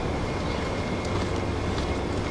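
Thomas school bus's diesel engine idling, a steady low rumble with a faint, steady high whine over it.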